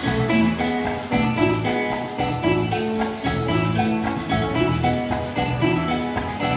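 A live Latin dance band playing an upbeat, steadily rhythmic number, with congas, a hand-held barrel drum, a drum kit and electric guitar.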